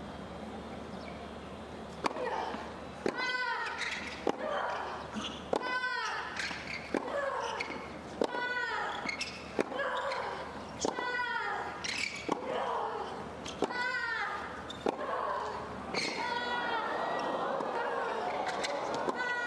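Tennis rally on a hard court: racket strikes on the ball come about every 1.3 seconds, each followed by a player's grunt falling in pitch. The first two seconds before the serve are quieter.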